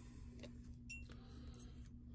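Near silence: faint room tone with a steady low hum and a couple of small clicks near the middle.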